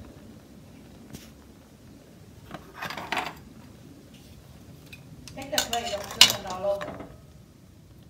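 Metal clinking and clattering of tongs against a stainless steel pot and steamer basket: a short clatter about three seconds in, and a longer, louder one with some ringing from about five and a half to seven seconds.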